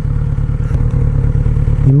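Kawasaki Z900RS motorcycle's inline-four engine running, heard as a steady low rumble.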